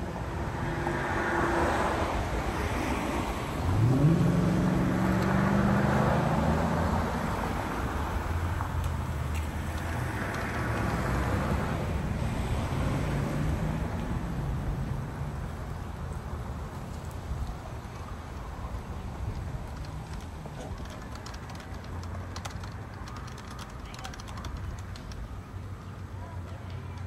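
Road traffic passing, with a vehicle's engine rising in pitch as it accelerates about four seconds in. Later come faint clicks of typing on a keyboard.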